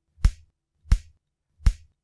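Heartbeat sound effect: three single, evenly spaced thumps a little under a second apart.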